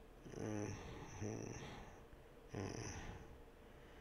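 A man murmuring to himself under his breath while thinking: three faint, low murmurs close to the microphone.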